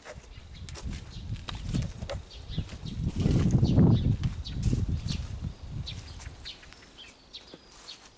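A cow lowing: one low moo swelling and fading between about three and four and a half seconds in, with scattered soft clicks and rustling around it.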